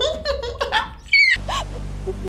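A person laughing, ending in a short high squeal that falls in pitch, then a low steady drone in the second half.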